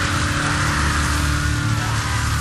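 Death metal recording: heavily distorted guitars and bass playing a loud, dense sustained riff.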